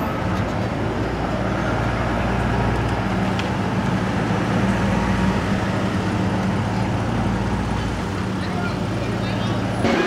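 A van's engine running at idle close by, a steady low hum over the noise of street traffic.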